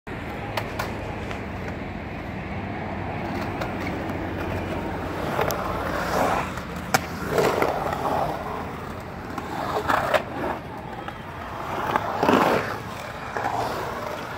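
Skateboard wheels rolling on the concrete of a pool-style bowl: a steady rumble that swells several times as the board carves the transitions, with a few sharp clicks along the way.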